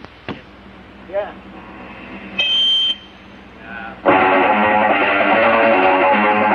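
Punk rock band on a cassette compilation coming in with a loud electric-guitar-led song about four seconds in. Before it comes a quieter lead-in: a click, short voice-like sounds and a brief high steady tone.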